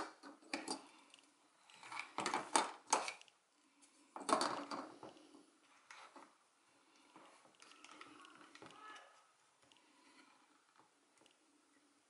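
Plastic parts of a DJI Mavic Pro remote controller being handled and set down on a cutting mat: a few bursts of light clicks and clatter in the first half, then fainter handling noise.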